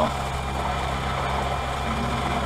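Optical lens edger running steadily, a constant machine hum as its bevel wheel grinds a quarter millimetre more off the edge of a bifocal lens so that it will fit the frame.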